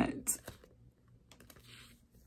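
Cellophane packets of nail decals crinkling and rustling as they are handled: a short crackle about a third of a second in and a fainter rustle later on.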